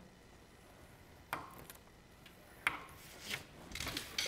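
Cardstock and a scoring tool being handled on a plastic scoring board: two light taps about a second and a half apart, then soft rustling as the card is slid across the board near the end.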